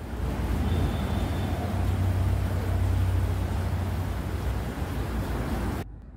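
Street traffic noise: a steady low rumble of passing vehicles with a wide hiss over it, cutting off suddenly near the end.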